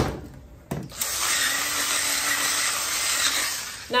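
Electric pepper grinder running for about three seconds, a steady whirring grind, preceded by a couple of clicks.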